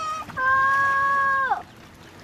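A loud, high-pitched call: a short rising note, then one long note held steady for about a second that drops in pitch as it ends.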